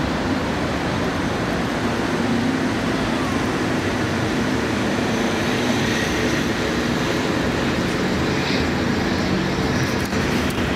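Steady outdoor background noise: an even, unbroken rush with no distinct events.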